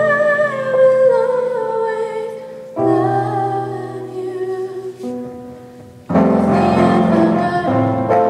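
A woman singing a slow ballad into a microphone with piano accompaniment, holding long wavering notes. The sound fades in the middle and the accompaniment comes back in loud and full about six seconds in.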